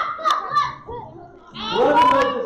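Several children's voices talking and calling out over one another during a group game, loudest near the end.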